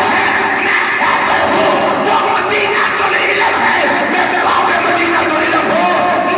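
A man's loud, impassioned voice through a microphone, chanting in long, drawn-out melodic phrases.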